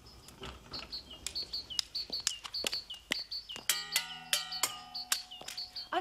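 A quick run of sharp clicks and taps, several a second, from high-heeled footsteps and a white cane tapping on a hard floor. A held tone of several pitches sounds briefly in the middle.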